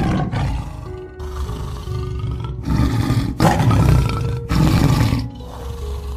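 Tiger roaring and growling in several rough bursts, the longest about three to four seconds in, over background music.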